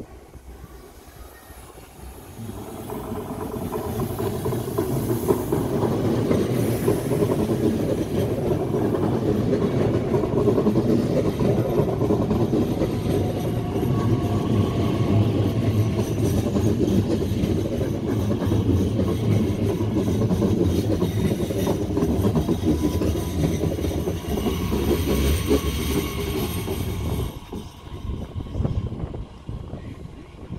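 A Class 442 (Bombardier Talent 2) electric multiple unit running past close by: loud rolling noise of steel wheels on the rails, with a faint whine. It builds over the first few seconds as the train approaches and cuts off sharply near the end.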